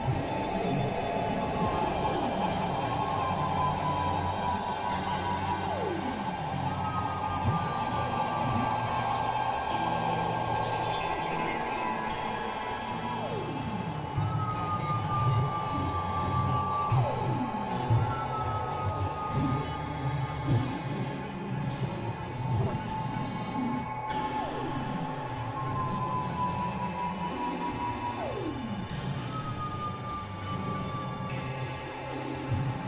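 Experimental electronic noise music: a dense, steady drone with repeated downward pitch glides every few seconds and short high tones. A fast high-pitched pulsing runs over it and stops about ten seconds in.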